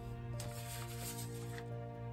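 Background music of softly held, sustained notes, with a brief soft rustle about half a second in as the paper is handled.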